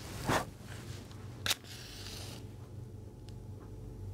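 A short breath blowing out a candle flame, then about a second and a half later a safety match struck, a sharp scrape followed by a brief fizzing hiss as the match head flares.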